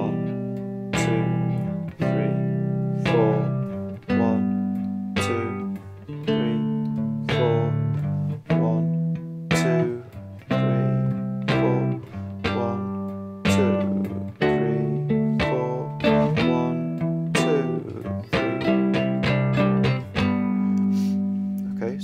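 Three-string cigar box guitar in GDG tuning, playing a strummed G, D, E minor, C progression in a soul style, each chord held for two beats. Steady strokes ring on, and the chord changes about every two seconds.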